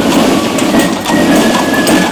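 Horse-drawn carriage passing on cobblestones: the hooves of a pair of horses clip-clopping, with the carriage wheels rumbling over the cobbles.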